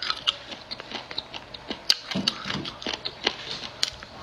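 Close-up chewing and biting of crunchy spicy food in chili oil, with irregular crisp clicks several times a second.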